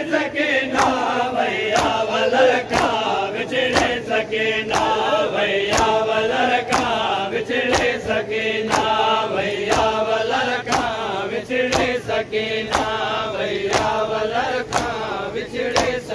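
Men chanting a Sindhi noha refrain together, with open-hand chest-beating (matam) landing in unison about once a second as a sharp slap on each beat.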